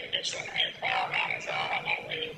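A person talking in a recorded phone call, the voice thin and rasping through the phone line.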